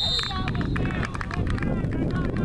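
Referee's whistle blast, a single steady high note that stops about a third of a second in, signalling the play dead. Voices of spectators and players follow.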